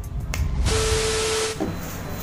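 A burst of loud hiss with one steady tone running through it. It lasts just under a second and cuts off sharply, typical of an edited transition sound effect.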